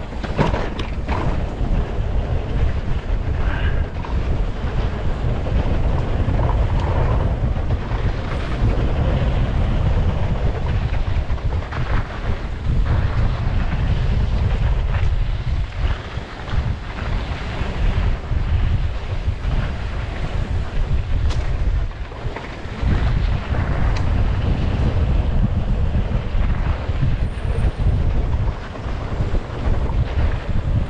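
Wind buffeting the camera microphone on a mountain bike riding fast down a dirt trail, a loud, steady low rumble. Short knocks and rattles from the bike and trail come through at scattered moments.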